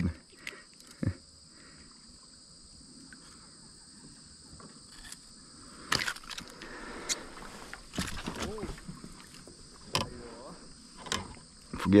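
Scattered knocks and clicks of a freshly caught traíra being handled and unhooked on a plastic kayak, over a steady high insect drone.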